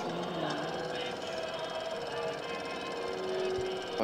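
Rapid, steady mechanical clatter of a running film projector, under indistinct voices.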